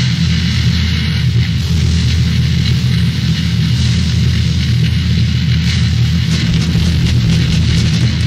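A heavy metal band playing an instrumental passage without vocals, with distorted electric guitar and bass riffing, heard as a raw, self-released 1980s demo-tape recording.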